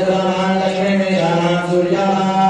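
A priest chanting Hindu mantras in a continuous recitation, held on a nearly steady pitch.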